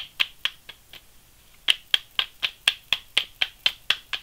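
Tarot cards being shuffled in the hands, the deck clicking sharply about four times a second, with a short pause about a second in.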